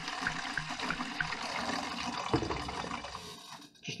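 Water pouring from a plastic gallon jug through a funnel into another plastic gallon jug, a steady pour that tapers off and stops shortly before the end.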